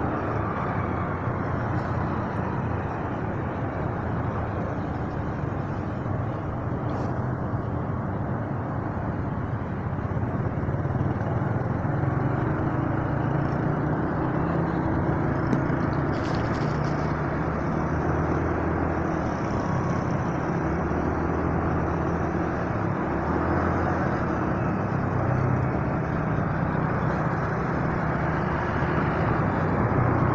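Motorcycle engine running while riding, with steady wind and road noise; its low note steps up and down every few seconds as the throttle changes.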